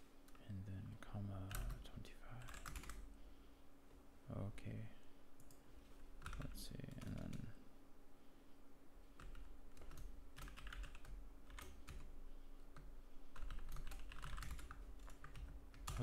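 Typing on a computer keyboard: scattered key clicks in short clusters, with a few brief low murmurs of a voice between them and a faint steady hum underneath.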